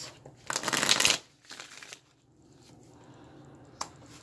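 A deck of tarot cards being shuffled: a loud, quick rustling riffle about half a second in, then softer handling of the cards and a single sharp click near the end as a card is laid down on the table.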